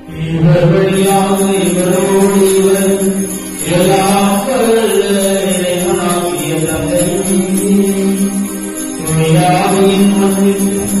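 Slow sung chant during a Catholic Mass: a single voice holding long notes and sliding between pitches. It starts suddenly and goes on loudly, with a short break a little under four seconds in.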